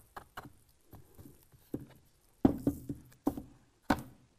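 A glitter-coated stretched canvas bumped against a tabletop to knock loose glitter down its face: a few light taps, then three louder knocks in the second half.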